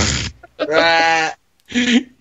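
A man laughing: a quick breathy burst, then one drawn-out, steady-pitched laugh lasting under a second, and a short burst near the end.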